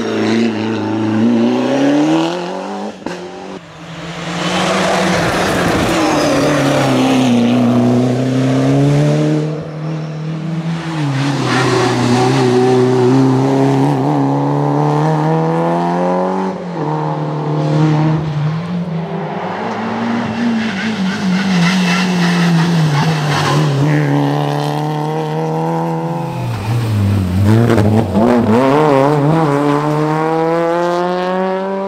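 Rally cars' engines, a Ford Sierra Cosworth and then Peugeot 205 GTIs, driven hard on a stage, the engine note climbing and dropping again and again through gear changes and corners, with a short lift about three seconds in.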